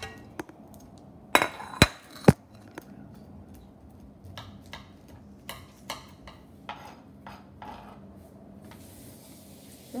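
A knife clicking and scraping on a plastic cutting board while a cooked blue crab's lungs are scraped out. Three sharp knocks come close together a second and a half to two and a half seconds in, then a string of lighter taps and scrapes.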